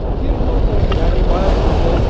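Wind rushing and buffeting on the camera microphone during a paraglider flight: a loud, steady low rumble.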